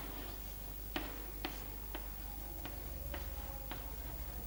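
Chalk writing on a chalkboard: a series of irregular sharp taps, about seven in four seconds, as the chalk strikes the board while forming letters, over a faint low hum.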